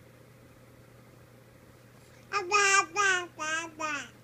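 A baby babbling: four short, high-pitched vocal sounds in quick succession, starting about halfway in.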